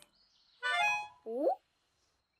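A short, bright, reedy musical sound effect about half a second in, followed by a brief upward-gliding note.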